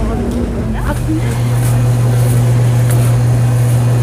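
A steady low mechanical hum comes in about a second in and holds, under faint market voices.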